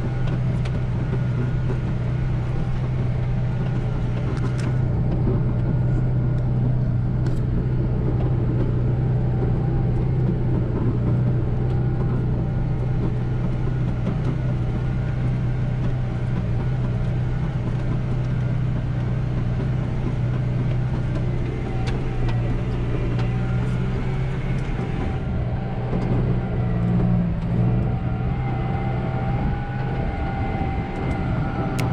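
McCormick MC 130 tractor's diesel engine running steadily under load while pulling a disc harrow, heard from inside the cab.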